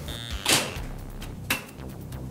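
mObi ballbot's unpowered stabilizing legs deploying in an emergency stop: a quick, loud sliding snap about half a second in, then a sharp click a second later as the legs settle.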